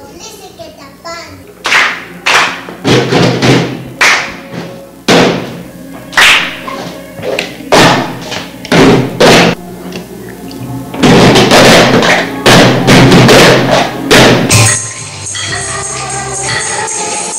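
Children playing a cup rhythm game: plastic cups knocked down on a table and hands clapping in short rhythmic patterns. The strokes grow louder and denser near the end.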